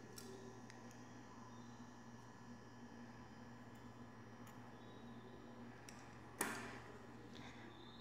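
Near silence: room tone with a low steady hum and a few faint clicks, broken by one brief soft noise about six and a half seconds in.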